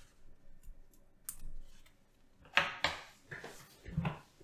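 Small plastic clicks and scraping as a USB programmer dongle is pulled off the plug-in connectors of a jumper-wire ribbon cable and the cable is handled. There is a sharp click about a second in, a louder pair of clicks with scraping past halfway, and a soft knock at the end.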